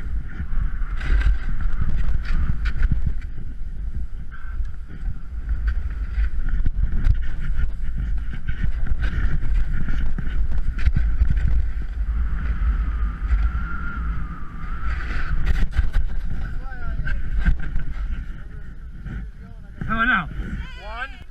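Wind noise on a body-mounted camera's microphone while snowboarding downhill, with the board scraping over snow. A voice comes in briefly near the end.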